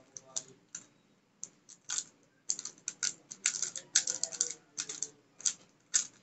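Plastic MoFang JiaoShi MF3RS stickerless 3x3 speedcube being turned fast in a speed solve: quick, irregular clicking and clacking of the layers in flurries, densest in the middle, with short pauses between bursts of turns.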